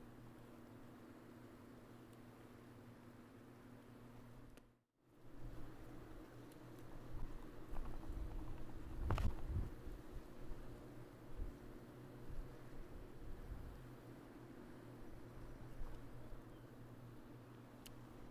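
Faint outdoor ambience of wind gusting on the microphone over rushing fast water. The sound cuts out briefly about five seconds in, and the gusts come through more strongly afterwards.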